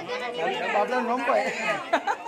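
Only speech: people talking close to the microphone, voices overlapping.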